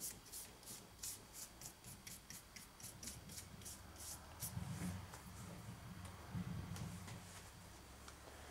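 Paintbrush bristles stroking a wet stain onto a wooden model tunnel portal: quick, repeated scratchy strokes about four or five a second, thinning out after about four seconds. A low hum sounds for a couple of seconds in the middle.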